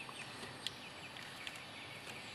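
Quiet outdoor ambience with faint, distant bird chirps and a single light click about two-thirds of a second in.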